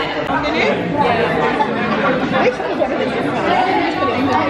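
Many people talking at once: a steady hubbub of overlapping conversation in a busy dining room, with no one voice standing out.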